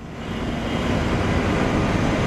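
Steady wash of road traffic noise from vehicles on a city flyover, fading in over the first half second.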